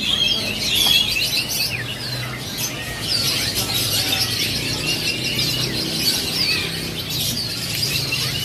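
Many caged songbirds chirping and singing at once, a dense mix of short, high, overlapping calls and trills.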